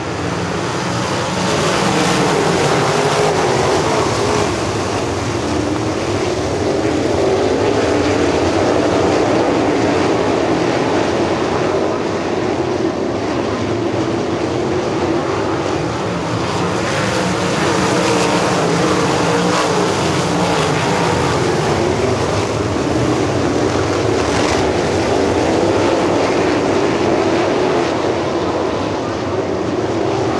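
A field of winged dirt-track sprint cars' V8 engines at full throttle on the green flag: many engines running together, their pitches wavering over each other. The sound builds over the first two seconds and then stays loud.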